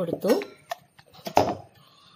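A brief bit of a woman's voice at the start, then a light click and a sharper knock of steel kitchen vessels as coconut paste is scraped out by hand.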